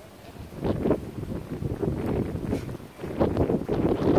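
Wind gusting across the microphone: an uneven low rumble that picks up about half a second in and grows stronger again near the end.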